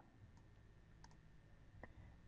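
Near silence with a few faint computer mouse clicks, two of them in quick succession about a second in.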